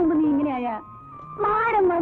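A high-pitched voice, its pitch sliding up and down, broken by a short pause about a second in, over a faint steady held tone.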